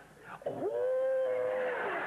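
A person's voice gives one drawn-out, high vocal cry about a second long. It swoops up at the start, holds level, then drops away.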